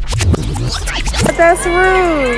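A DJ record-scratch sound effect used as an edit transition, over a steady background music beat. About a second and a half in, a voice with a drawn-out falling pitch comes in.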